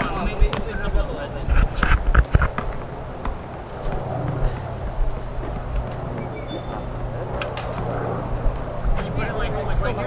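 A basketball bouncing on pavement several times in the first couple of seconds, then a steady low hum with faint children's voices.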